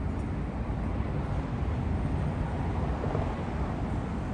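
Outdoor city ambience from a high balcony: a steady low rumble of distant traffic, with wind buffeting the microphone.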